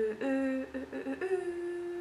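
A woman humming a tune with her lips closed: a few short notes stepping up and down in pitch, then one longer held note.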